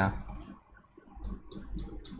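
A few short computer mouse clicks: one about half a second in and a small cluster around one and a half seconds, over a low hum.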